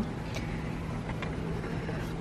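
Steady low background noise in a pause between words: a faint hum with hiss, and one or two faint ticks.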